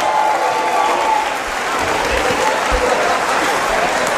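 Concert crowd applauding and cheering, with scattered shouts, as a song finishes. A lingering tone fades out in the first second, and a few low thuds come near the middle.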